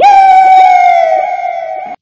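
A single loud, high held tone with rich overtones, one note that drifts slightly lower. It cuts in sharply and stops abruptly after about two seconds.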